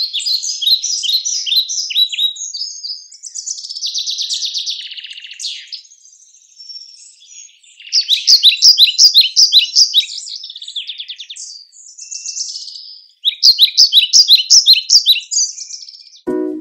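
Birdsong: a small songbird singing several phrases of quick, repeated high notes, with short pauses between the phrases and one buzzier trill about three to five seconds in.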